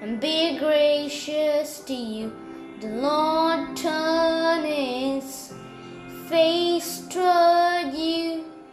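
Music: a high voice singing a melody in held notes over a steady sustained instrumental backing.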